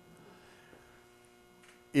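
Faint steady electrical mains hum, a few constant tones, heard in a pause in speech; a man's voice comes back in right at the end.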